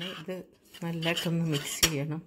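Metal spoon stirring dry flour and milk powder in a stainless steel pot, with one sharp clink of spoon against the pot near the end. A voice is heard over much of it.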